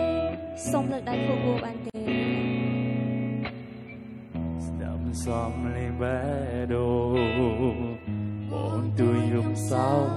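A pop song performed live: singing with guitar accompaniment over sustained bass notes. About five seconds in, the voice holds notes with a marked vibrato.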